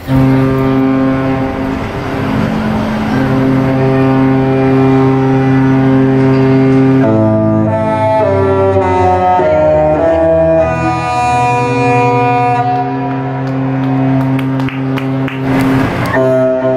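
Cruise ship horns sounding: long, steady, deep blasts for about the first seven seconds, then a tune of changing notes. The tune is typical of the Disney Dream's musical horn.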